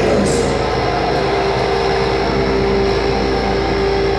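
Distorted electric guitar and bass ringing out a sustained, held note through a concert PA, over a steady low rumble, without drumming or vocals.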